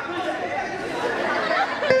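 Many voices talking over one another: audience chatter.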